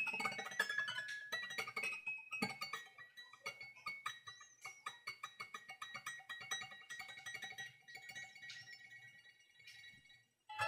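Experimental tape recording of sounds played on the strings inside a piano: a dense run of short notes with ringing tones, growing sparser and fainter toward the end.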